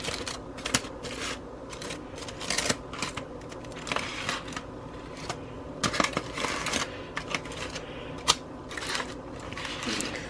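Aluminium foil crinkling and crackling in irregular bursts as a baked foil packet is pulled open by hand.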